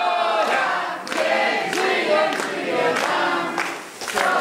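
A group of people singing a song together, with hand-clapping.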